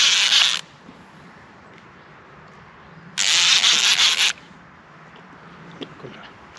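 Baitcasting reel rasping in two bursts of about a second each, one at the very start and one about three seconds in, while a hooked fish pulls against the hard-bent rod.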